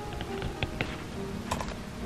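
Apple Pencil tip tapping and clicking on an iPad's glass screen while writing, a handful of light taps, the sharpest about one and a half seconds in. Background music plays underneath.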